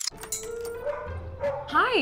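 A dog whining once near the end, a short call that rises and falls in pitch, over a steady background tone.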